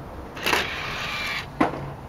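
Bose 3-2-1 Series II media center's DVD tray mechanism running for about a second as the disc tray slides open, ending in one sharp click as the tray reaches its stop.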